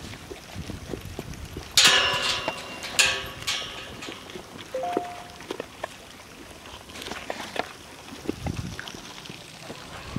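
Miniature horse eating a supplement from a rubber feed pan, its muzzle working in the pan. Louder noises from the pan come about two and three seconds in.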